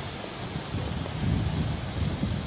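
Wind buffeting the microphone outdoors, an uneven low rumble over a steady hiss that swells about a third of the way in.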